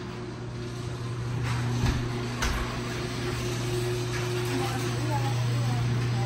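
A steady low mechanical hum with a fainter steady tone above it, broken by a couple of short knocks or clicks about two seconds in.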